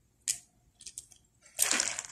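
Beads clicking against each other and fishing line rasping through them as a beaded piece is handled and threaded: a couple of brief clicks, then a longer rustle near the end.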